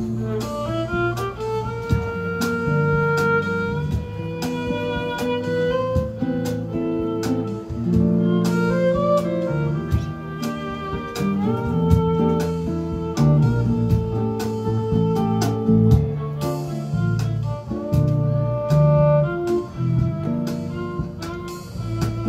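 Live jazz trio: a violin plays a bowed melody over two guitars playing chords.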